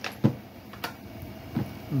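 Chainsaw chain brake handguard being pushed and snapped over: two sharp plastic clicks as the brake engages or releases.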